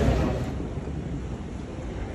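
Low, steady rumbling background noise of an airport terminal hall, settling to an even level about half a second in.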